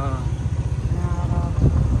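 Motorcycle engine running with a steady low rumble.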